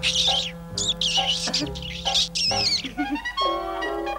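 High, warbling chirps from a small cartoon fuzz creature over held background music; the chirps stop about three seconds in and the music carries on.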